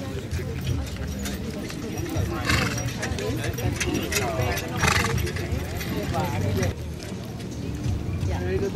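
Team of four carriage horses trotting on grass, their hooves and harness sounding. Two short, loud noisy bursts come about two and a half and five seconds in.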